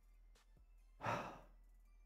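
A man's brief sigh, one breath pushed out into a close headset microphone about a second in.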